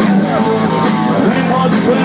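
Rock band playing live: electric guitar over bass and drums, with regular drum and cymbal strokes about twice a second.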